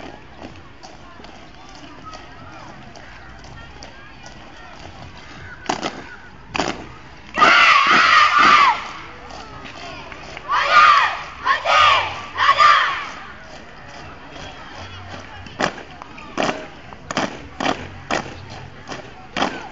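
A drill squad's boots stamping in step on brick paving, a steady marching beat of short crisp stamps, sharper and louder near the end. One long shouted drill command comes about seven seconds in, then three shorter shouted commands a few seconds later.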